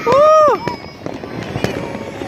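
A loud, whooping "woo" cheer in the first half-second, then scattered pops and crackles of aerial consumer fireworks going off around the neighbourhood.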